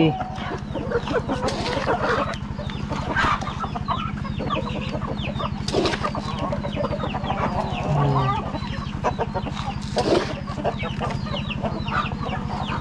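A flock of laying hens clucking around a bucket of grain feed, many short calls overlapping. A steady low hum runs underneath.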